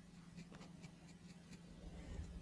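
Faint, irregular scratching of a stiff-bristled brush scrubbing dried salt crust off a diecast metal model body, over a low steady hum.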